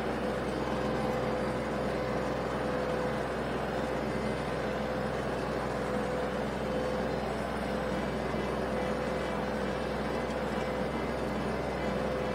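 Small tractor's diesel engine running steadily under load while pulling a rotary tiller through a paddy, with a constant whine over its drone.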